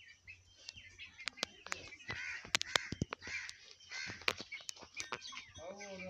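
Birds calling, among them several harsh caws in the middle stretch, over scattered irregular sharp clicks.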